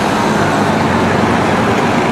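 Street traffic with a city bus's engine running steadily as it pulls across the intersection, a low engine hum over road noise.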